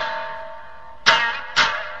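Satsuma biwa struck sharply with its plectrum: two strokes about a second in and half a second apart, each ringing out and fading, following the fading ring of a stroke just before.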